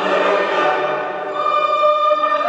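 A choir singing slow, sustained notes, moving to a brighter, higher chord a little past halfway.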